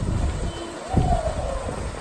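A brief wordless vocal sound from a woman, a held tone that glides slightly down about a second in, over a steady low rumble.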